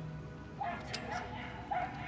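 Small poodle-type dog barking in short, high yips, a few in quick succession about every half second.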